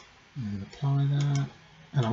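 A man's voice making two drawn-out, steady hums, the second longer and louder, with a few mouse clicks between them.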